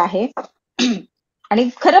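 A woman's speech broken by a single short throat clearing about a second in, then talk resumes.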